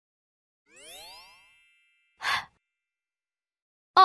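Cartoon transition sound effects: a rising pitched glide about a second in, with one high tone held on briefly, then a short noisy swish a little after two seconds.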